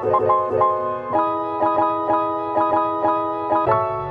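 Background music: a plucked-string melody of short, evenly spaced notes over a steady beat.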